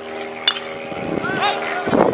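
A baseball bat strikes a pitched ball with one sharp crack about half a second in, followed by raised voices shouting. A steady engine-like hum runs underneath.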